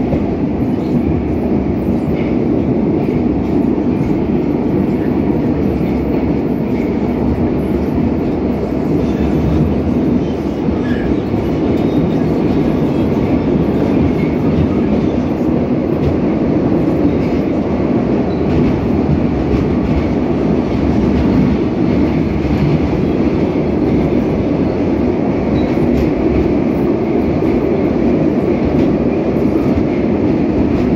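Kazan Metro train running at speed through a tunnel, heard from inside the car: a steady, loud rumble of wheels and running gear that does not change.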